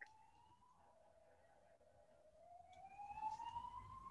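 Faint siren wailing, its pitch sliding down to a low about two seconds in and then rising again toward the end.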